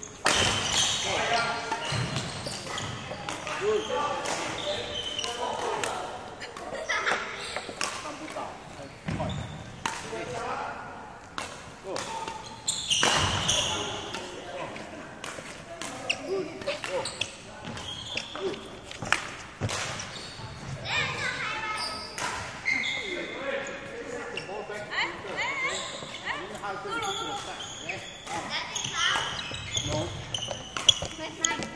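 Repeated sharp badminton racket hits on shuttlecocks and footfalls on the court floor during a drill, echoing in a large sports hall, with indistinct voices.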